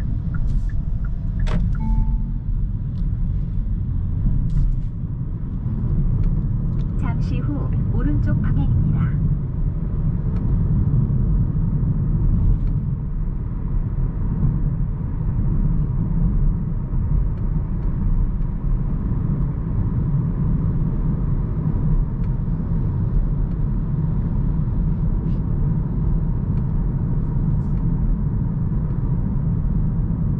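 Steady low road and tyre rumble inside the cabin of a moving Hyundai Kona Hybrid. A few brief clicks and a short tone come near the start.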